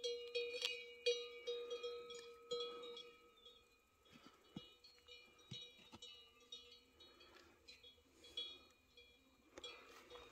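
Faint cowbells clanking and ringing irregularly on cattle as they move about. The ringing is strongest in the first three seconds, then thins to scattered clinks.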